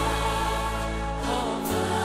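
Live worship song: a choir singing a slow, sustained melody over band accompaniment, with held bass notes that change near the end.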